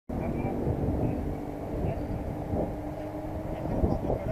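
Steady low rumble of wind and handling noise on a body-worn action camera's microphone as the rider shifts in the zipline harness, with faint voices in the background.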